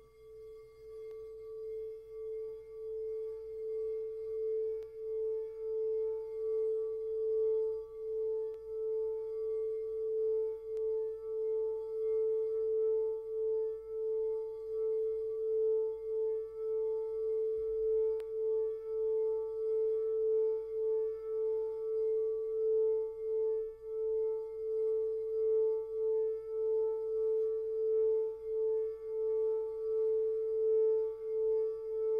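Frosted crystal singing bowl sung by rubbing a wand around its rim: one sustained tone that swells over the first few seconds, then holds, wavering in loudness about one and a half times a second.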